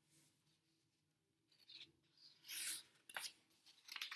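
A few faint, short rustles of paper as a picture book's page is handled and turned, starting about halfway through.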